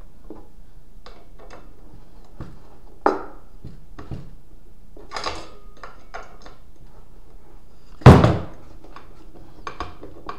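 Hand tools and small metal hardware clinking and knocking against a wooden workbench while a nut is held with a socket and driven on with a screwdriver. Scattered clicks and knocks, with a louder knock about three seconds in and the loudest, a sharp clack with a short ring, about eight seconds in.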